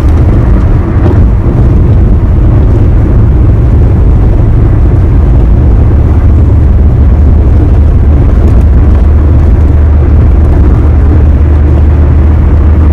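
Road and wind noise of a car driving at highway speed, heard from inside the cabin: a loud, steady low rumble.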